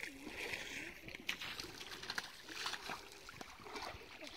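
Light, intermittent splashing of shallow lake water as a child moves about in it, with faint voices.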